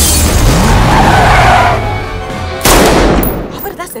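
Trailer score and sound design: a loud whooshing hit over a deep rumble with a swirling sweep, then a second sudden hit a little under three seconds in that dies away.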